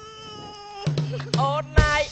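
Song with a band backing: a singer holds one long note that fades, then more singing comes in over low steady instrument tones, with a heavy drum hit near the end.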